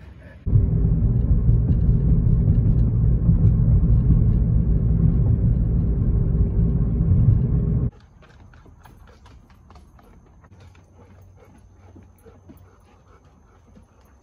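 Car driving along a road: a loud, steady rumble of engine and road noise inside the cabin, which cuts off suddenly about eight seconds in. After it come faint scattered ticks and a thin, steady high whine.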